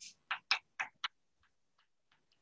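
Chalk tapping and scratching on a blackboard as symbols are written: a quick run of about five sharp taps in the first second, then fainter, sparser ones.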